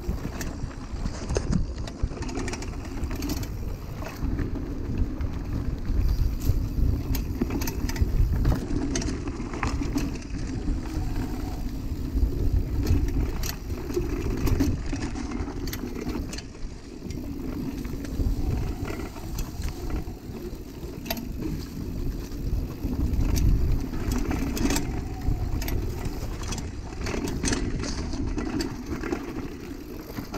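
Kona hardtail mountain bike rolling fast over a dirt forest trail: continuous tyre noise with frequent clicks and rattles from the chain and frame over roots and bumps, and wind rumbling on the microphone.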